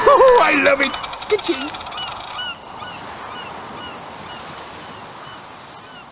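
A few loud honking calls that glide up and down in pitch, then faint short high chirps repeating two or three times a second, fading.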